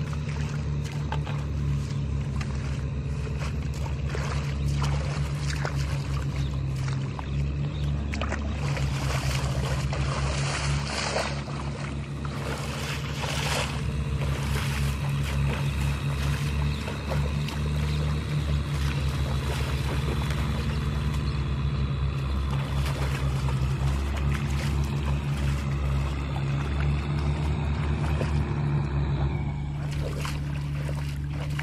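Hand tractor engine running steadily with a low, pulsing drone, mixed with splashing as someone wades through shallow field water, heaviest around a third of the way in.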